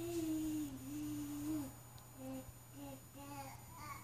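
Baby's voice: one long, slightly falling hum-like note, then a few short babbling syllables.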